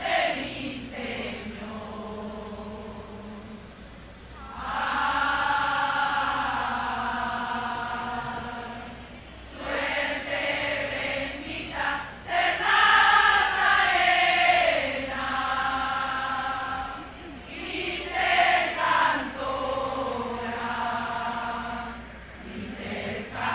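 A group of voices singing a slow hymn together in long, held phrases, with short breaks between the lines.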